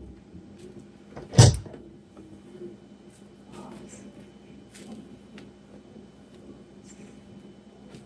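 Electric griddle set back down on the countertop with one heavy thump about a second and a half in, followed by faint scraping and light ticks of a silicone spatula spreading batter across the griddle surface.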